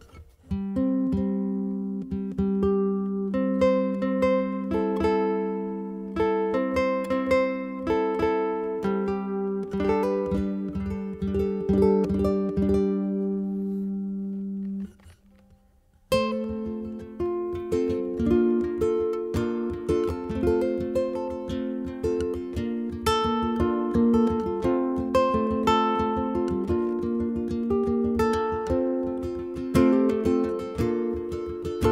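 Ko'olau CE-1 custom electric tenor ukulele played solo, with picked melody notes ringing over a held low note. The playing breaks off for about a second near the middle, then picks up again with a busier passage.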